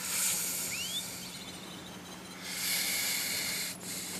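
Beach ambience: two swells of hissing noise, each a second or two long, with a short rising chirp about a second in.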